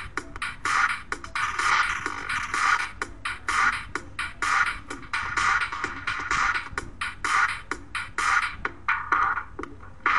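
An electronic dance track with a drum-machine beat playing back through an Ableton Live audio effects rack, its sound being changed as the rack's filter and "Grey" effect macro knobs are turned.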